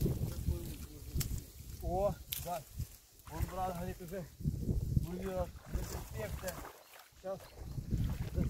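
Water sloshing and splashing around a person wading waist-deep while pulling and throwing reeds. Over it, short voice-like calls come in quick repeated runs several times.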